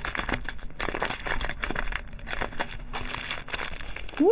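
Plastic packaging crinkling and rustling irregularly as a box of wrapped lollipops is opened and the plastic-wrapped lollipop packets are pulled out.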